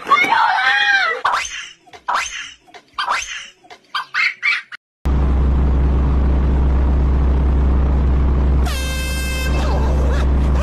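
Voices shouting and laughing for the first few seconds. Then the sound cuts to a steady low hum, and near the end a short single car-horn blast.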